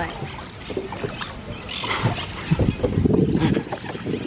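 Rowing-boat oars dipping and splashing in lake water, with scattered knocks and a louder splash-like burst about two seconds in.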